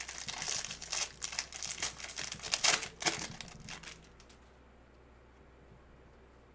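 Foil wrapper of a trading-card pack crinkling and rustling as hands work it open. The rustling stops about four seconds in.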